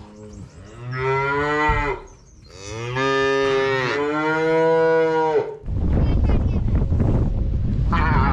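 Calves mooing: two long, loud calls, the second one longer. From about six seconds in, wind rumbles on the microphone.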